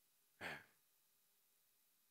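A man's single short breath into a close microphone, about half a second in, then near silence.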